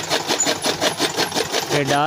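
Electric chaff cutter running, its blades chopping green fodder stalks in a rapid, even rhythm. A wavering voice comes in near the end.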